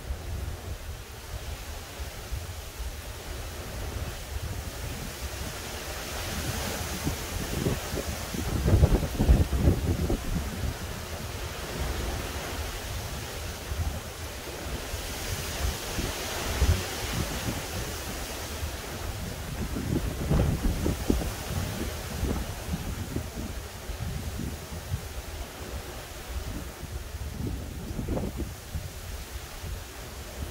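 Gusty hurricane wind from Hurricane Ian, with wind buffeting the microphone in low rumbles. The gusts swell and fade several times and are strongest about nine seconds in.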